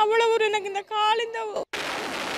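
Rocket launching from a truck-mounted multiple rocket launcher: a sudden, steady rushing noise that starts near the end.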